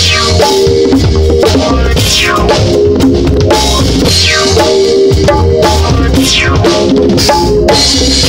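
A live band playing loudly with a drum kit and held low notes, with a pair of LP City bongos played by hand close by.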